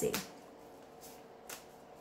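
Oracle cards being handled in the hands, with one short sharp card snap about halfway through, over a faint steady hum.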